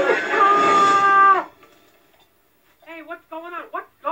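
A cartoon character's voice holding a long, drawn-out 'aah' that cuts off suddenly about one and a half seconds in. After a brief pause, short spoken syllables begin near three seconds.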